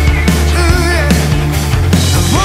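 Melodic hard rock song playing: a full band with drums and a sustained low bass, and a wavering lead melody above them.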